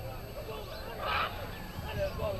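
Shouting voices of players and spectators carrying across an open rugby field, with a short, loud, harsh burst about a second in.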